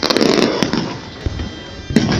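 Fireworks bursting overhead: a loud blast with crackling right at the start that dies away, then another sharp bang near the end.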